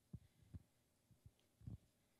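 Near silence broken by about five soft, low thumps: handling noise from a handheld microphone held close to the mouth.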